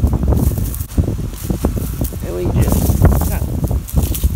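Wind buffeting the microphone with a steady low rumble, over crackling and rustling of dry dead seedlings and roots being pulled from a plastic seedling tray.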